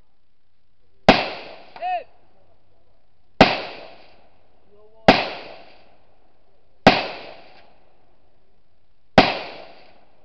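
Five deliberate rifle shots, spaced roughly two seconds apart, each with a short echoing tail. A brief pitched ring follows just after the first shot.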